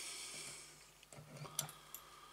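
A short, soft breath close to the microphone, then a few light clicks and taps from fingers and tools handling the fly in the vise, the sharpest about one and a half seconds in.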